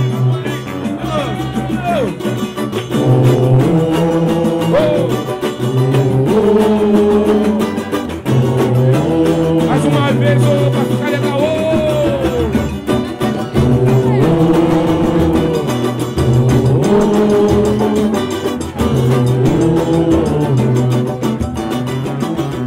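Live samba band playing: a stepping bass line under pitched melody lines, with hand percussion including a tamborim, and singing voices.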